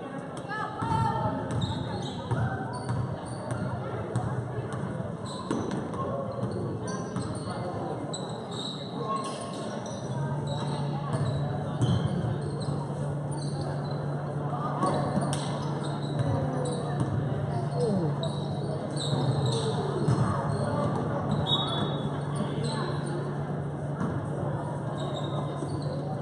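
A basketball game in a gym: a basketball bouncing on the court amid the indistinct voices of players and spectators, echoing in the large hall. A steady low hum joins about ten seconds in.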